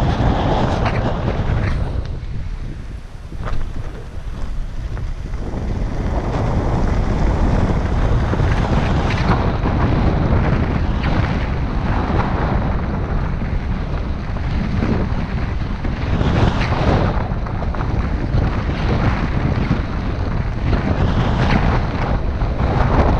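Wind buffeting the microphone of a camera mounted outside a moving car, over the car's tyre and road noise. The noise drops for a couple of seconds a few seconds in.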